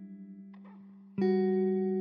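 Background instrumental music: held notes, then a louder new chord comes in a little over a second in.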